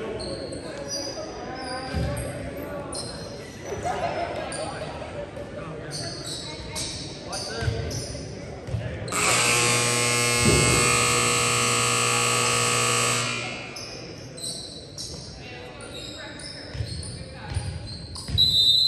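Gym scoreboard horn sounding one long, loud buzzing blast of about four seconds, about halfway through. Around it, volleyballs thud on the hardwood floor and voices echo in the large gym.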